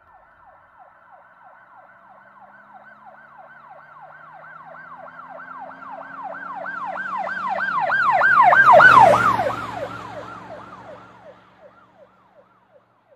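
A siren sounding a rapid rising-and-falling cycle, about three a second, passing by: it grows louder to a peak about nine seconds in, with a rush of road and engine noise as it goes past, then fades away.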